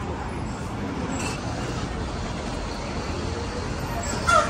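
Steady city street traffic noise, an even background hum with faint voices behind it.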